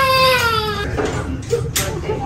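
Newborn baby crying: one long wail that sags slightly in pitch and stops a little under a second in.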